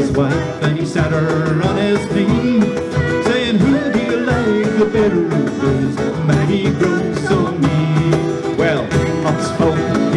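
Live acoustic folk-rock band: a woman singing lead over strummed acoustic guitars, with a cajon keeping a steady beat.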